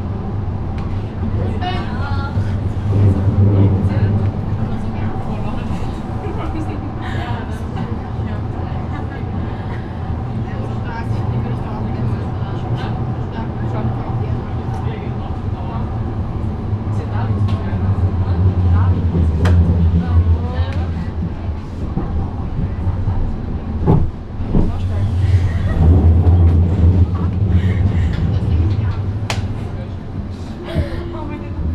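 Inside a Badner Bahn light-rail car running on street track: a steady low rumble of motors and wheels that swells and eases, with a couple of sharp knocks from the track near the end.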